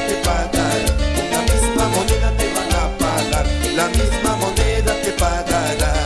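Salsa orchestra playing live: trumpets and timbales over bass, with a steady beat.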